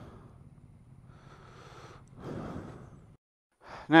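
Faint hiss, then about two seconds in a short soft breath or sigh close to a helmet microphone; the sound cuts off abruptly shortly before the end.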